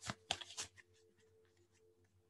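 A tarot card being drawn and handled: a few short paper rustles and ticks within the first second.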